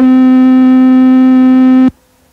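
A single loud, steady sustained note from an instrument in a lo-fi improvised jazz/punk recording. It is held without wavering and cuts off suddenly near the end.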